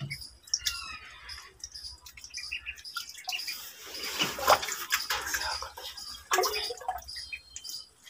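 Ducklings peeping repeatedly as they paddle and splash at the surface of a water-filled glass fish tank, with two louder splashes about halfway through and again a little later.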